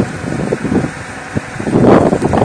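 Steady background noise of an open-air gathering picked up through a live microphone, with a couple of faint knocks.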